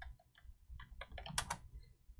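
Faint computer-keyboard typing: a handful of quick, separate keystrokes entering a short terminal command, with one louder keystroke about one and a half seconds in.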